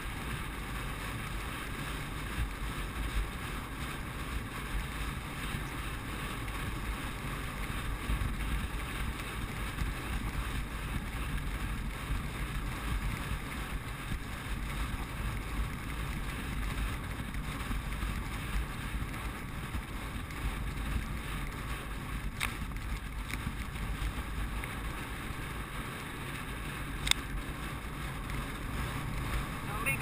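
Steady wind rush on a jockey's helmet-camera microphone as a racehorse gallops at workout speed on a dirt track. Two sharp clicks come late on.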